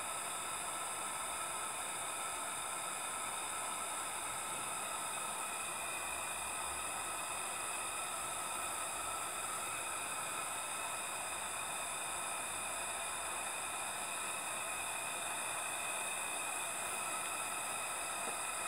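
Steady hiss from a miniature steam boiler and engine running while still warming up, even in level with no audible beat.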